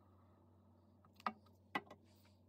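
Two short, sharp clicks about half a second apart from small craft items handled on a tabletop, after about a second of a faint steady hum.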